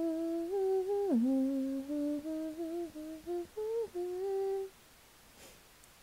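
A young woman humming a tune with her mouth closed, in held notes that step up and down, with a sharp downward slide about a second in; the humming stops about three-quarters of the way through.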